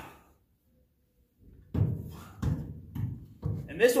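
Billet differential case knocking and clunking against the frame and mounts as it is worked up into place, an irregular series of knocks starting about a second and a half in.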